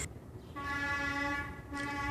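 A steady tone at one fixed pitch, horn-like, sounded twice: a long one of about a second, then a shorter one after a brief break.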